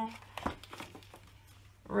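Paper rustling as a sheet of a small patterned paper pad is turned over, with a light tap about half a second in.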